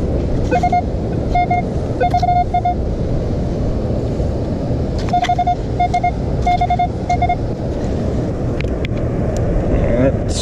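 Metal detector sounding short, repeated beeps of one medium-pitched tone as the coil is swept back and forth over a buried target, in two clusters of several beeps each: the signal of a coin, which turns out to be a penny. Under it runs a steady low rush of surf and wind.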